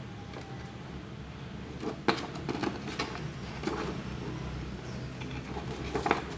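A few short clicks and light knocks, mostly between about two and four seconds in, as an H11 LED headlight bulb and its wiring are handled, over a steady low hum.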